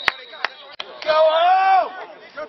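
A referee's whistle cuts off right at the start, followed by one loud sharp crack and three lighter knocks. About a second in, a man gives a drawn-out shout that rises and then falls in pitch.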